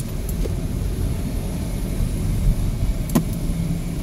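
Car cabin noise while driving slowly: a steady low rumble of engine and tyres on the road, with one sharp click about three seconds in.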